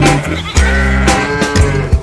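Psychobilly band music with drums and bass, with a sheep bleating over it in the middle of the passage.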